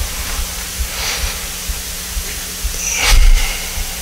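Steady hiss and faint hum of an open pulpit microphone. About three seconds in, a brief low thump comes with a short rush of noise.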